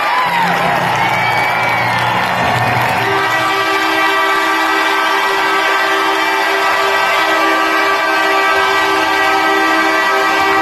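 Arena horn blowing one long, steady blast that begins about three seconds in, over a cheering crowd. It marks the home team's win at the end of the game.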